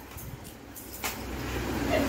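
A low steady background rumble, with a faint short knock about a second in.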